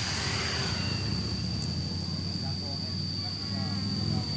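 Steady roadside background noise: a low rumble of traffic with a continuous thin high-pitched whine over it.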